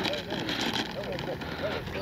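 The model jet's 80 mm 12-blade electric ducted fan running at low taxi throttle, a steady hiss with no clear changes, with faint voices in the background.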